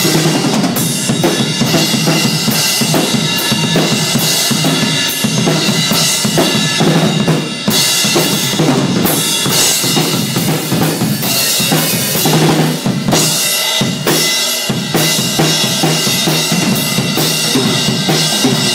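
Acoustic drum kit played hard and fast: dense bass drum and snare hits under a constant wash of Zildjian crash and ride cymbals, the low drums briefly dropping out late on.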